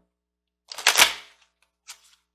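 Cards being handled at the table: a brief, sharp burst of crisp rustling and clicking about a second in, followed by a lighter click near the end.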